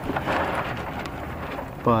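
Even wind and water noise aboard a sailing kayak on choppy bay water, with a short spoken word near the end.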